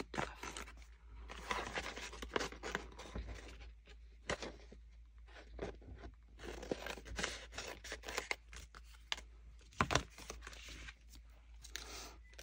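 Scissors cutting through a glued paper collage sheet: an irregular run of snips with paper rustling and scraping, and a couple of sharper clicks near the end.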